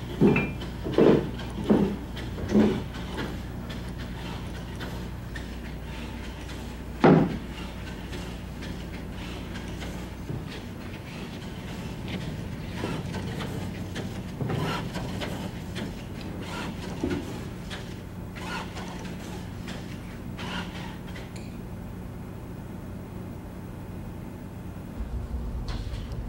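Spring Flamingo bipedal robot walking: its feet knock on plywood slopes in a steady rhythm, about one step every three-quarters of a second at first, with one louder knock about 7 s in and fainter, less regular knocks later. A steady low electrical hum runs underneath.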